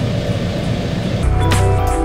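Case IH Maxxum tractor engine idling at about 850 rpm at a standstill, a steady low rumble inside the cab. About a second in, background music with long held chords comes in and takes over.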